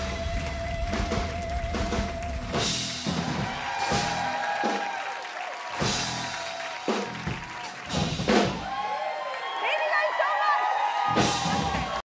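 A live house band plays upbeat music with drum kit, bass and electric guitar, with voices over it. The heavy drum and bass thin out about three seconds in.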